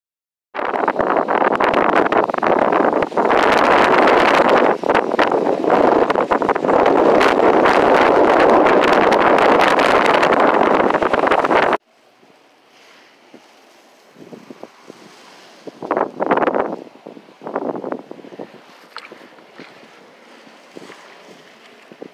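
Wind buffeting a phone microphone, loud and continuous for about eleven seconds and then cut off abruptly. After that, quieter sloshing as a kayak paddle is dipped and pulled through shallow, muddy water a few times.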